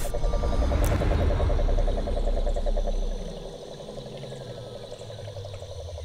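Cane toad calling: a continuous, rapidly pulsing low trill. A low rumble sounds underneath for the first half and fades about three seconds in.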